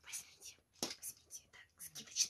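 Quiet whispered speech from a woman: short breathy, hissing syllables with almost no voiced tone.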